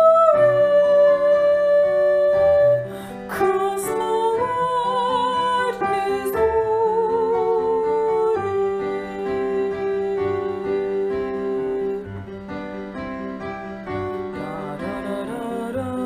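Choral part-learning track for the soprano line: a voice sings long held notes with vibrato over piano accompaniment.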